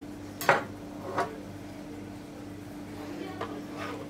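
A kitchen knife knocking on a wooden cutting board: a sharp knock about half a second in, a lighter one just after a second, and a faint tap near the end, over a steady low hum.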